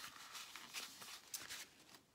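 Faint rustling of a paper kitchen towel being handled, with a few light scratchy taps.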